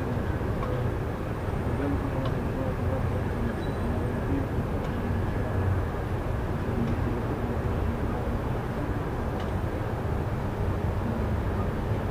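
Steady low rumble of city street traffic, with faint voices in the background.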